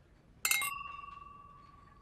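Two stemmed wine glasses clinked together: a bright clink about half a second in, then a clear ringing tone that slowly fades away.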